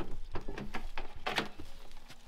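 The driver's door of a Ford Ranger pickup unlatching with a few sharp clicks and being pulled open, with scattered knocks of footsteps on rocks and dry brush.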